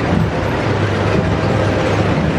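Tracked military missile-launcher vehicles driving past, their engines and tracks making a steady, loud noise.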